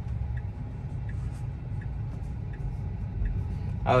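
Low, steady road and tyre rumble inside a Tesla electric car's cabin as it drives slowly, with the turn-signal indicator ticking faintly about every 0.7 seconds.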